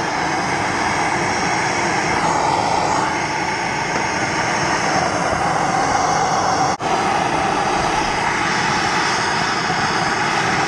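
Hand-held gas torch burning with a steady rushing flame noise as it heats a cracked aluminum boat-hull seam for brazing. The sound drops out for an instant about seven seconds in.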